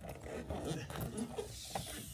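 Clear protective plastic film being peeled off a display panel: a quiet, irregular rustle with small crackles.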